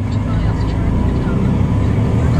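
Semi truck's diesel engine running steadily while driving, a low, even drone heard from inside the cab.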